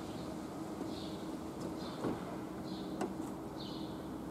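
City-centre street ambience: a steady low hum over a background of traffic-like noise, with short high chirps roughly once a second and two sharp knocks, about two and three seconds in.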